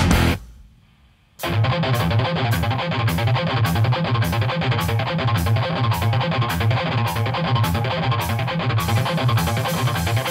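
Hardcore/crossover band music with distorted electric guitar: the band stops dead for about a second near the start, then comes back in with a steady, rhythmic guitar-and-drum riff. Regular high hits mark the beat about twice a second.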